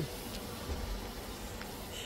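DJI Mini 3 Pro quadcopter hovering overhead, its four propellers giving a faint, steady buzz.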